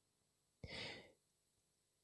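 Near silence broken by one short, soft breath from a man about half a second in, picked up close by a headset microphone.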